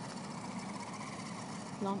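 Electric motor and geartrain of a Trailfinder 2 radio-controlled scale truck whirring steadily as it drives.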